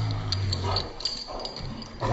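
Dogs play-fighting: a low, steady growl that fades out a little under a second in, followed by quieter rustling and a few light clicks.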